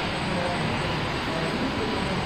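Steady rushing background noise of a large gym hall, with faint indistinct voices.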